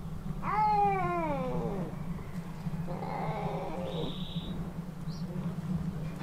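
Domestic cat meowing: one long, loud meow that falls in pitch, starting about half a second in, then a second, fainter meow about three seconds in.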